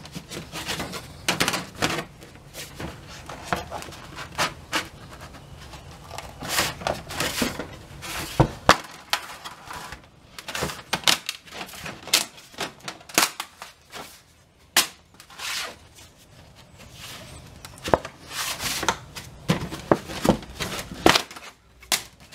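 Thin scored aluminum sheet being bent back and forth by gloved hands, with many irregular sharp clicks, crackles and pops as the metal flexes and breaks along the score lines.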